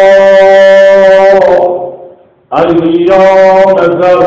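A man's voice chanting an Arabic devotional hymn to the Prophet Muhammad, holding one long steady note. The note fades out about two seconds in, and after a short breath the next phrase begins.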